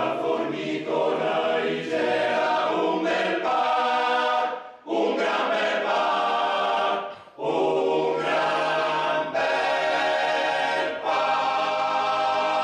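Male choir singing a cappella in harmony, led by a conductor, in sustained phrases with short breath breaks about five and seven seconds in.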